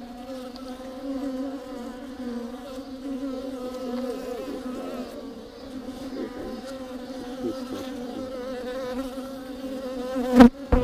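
Honey bees buzzing inside a hollow tree-trunk hive: a steady many-winged hum, with individual bees' tones wavering up and down over it.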